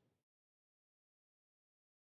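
Near silence: a very faint noise fades out in the first quarter second, then digital silence.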